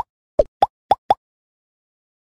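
Five quick cartoon 'pop' sound effects in just over a second, each with a slight upward pitch bend, accompanying an animated logo as its pieces pop into place.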